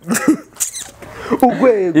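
A man's voice in conversation: a few short breathy sounds, then a drawn-out utterance that glides down in pitch and levels off in the second half.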